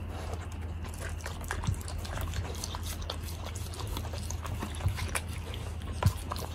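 A Bernese mountain dog puppy licking a wooden plate clean: quick wet tongue smacks and clicks, with a couple of louder knocks.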